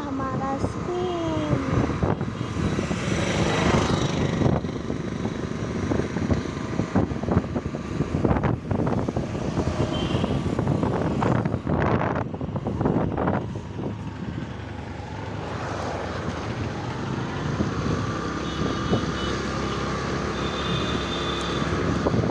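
A motor vehicle travelling along a road, its engine running under steady road and wind noise, with a few knocks. About two-thirds of the way in, the engine note rises in pitch as it speeds up, then holds.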